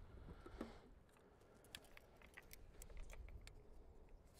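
Near silence with a scatter of faint, sharp little clicks and ticks from about a second and a half in.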